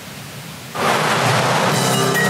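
A news-broadcast transition sound effect: a loud noisy whoosh that starts suddenly about three-quarters of a second in, over a low music bed, leading into the story's background music.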